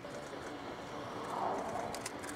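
Distant F-15J fighter jet passing, its twin turbofan engines heard as a steady far-off rush that swells about one and a half seconds in, with a few sharp clicks near the end.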